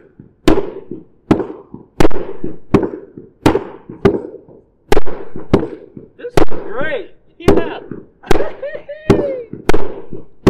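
A series of sharp hits, about one every 0.7 seconds, some very loud. In the second half a voice cries out between them, its pitch gliding up and down.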